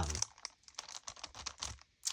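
Clear plastic packaging crinkling and crackling as it is handled, a run of small irregular crackles, after the tail of a spoken "um" at the very start.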